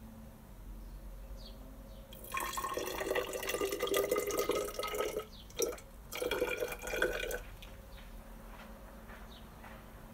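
10% hydrochloric acid poured from a plastic bottle into a tall glass graduated cylinder. The splashing pour starts about two seconds in and lasts about three seconds. A brief splash and a second, shorter spell of pouring follow before it stops.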